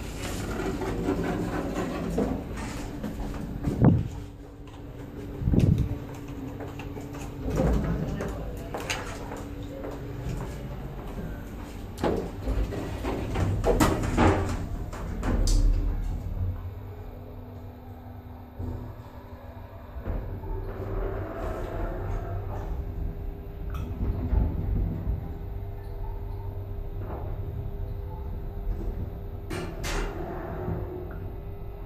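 A Nechushtan-Schindler hydraulic elevator at work: the sliding doors close with several thumps in the first half. Then the pump motor, which the uploader rates as bad, runs with a steady hum and low rumble as the car rises.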